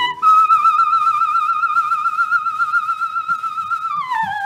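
A coloratura soprano holds one long, very high note with an even vibrato, unaccompanied, and slides down from it at the very end. It comes from a 1929 Odéon 78 rpm record, with faint surface crackle.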